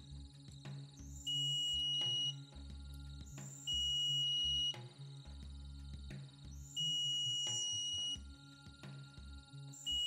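A voltage-injection short-finder (Short Killer) beeps three times, each a high steady tone about a second long, with a fourth starting near the end. A low hum and faint clicks sit underneath. The beeps come as a ground wire is touched to the CPU power-stage output: the tool's sound changes when current rises, marking the power stage with the shorted MOSFET.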